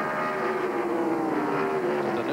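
NASCAR Busch Grand National stock cars' V8 engines running at racing speed on track, heard as one steady engine note that slowly drops in pitch.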